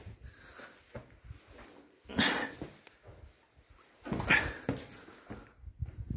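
A person huffing and groaning with effort, two loud heavy exhalations about two and four seconds in, while squeezing and clambering over rocks.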